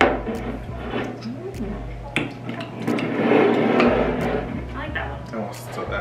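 Glass soda bottles clicking and knocking against the table as they are set down, swapped and lifted to drink, along with wordless vocal sounds from the two tasters. The loudest stretch, a breathy, noisy sound, comes about three seconds in.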